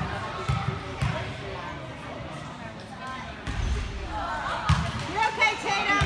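A basketball bounced three times on a hardwood gym floor, about half a second apart, by the player at the free-throw line. Later comes another thud, and spectators call out near the end.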